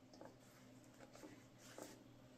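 Near silence with a few faint, soft rustles of fabric scraps being sorted through by hand in a bowl.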